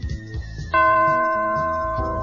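A single bell chime struck about three-quarters of a second in, ringing on and slowly fading over quiet background music. It is the read-along recording's page-turn signal.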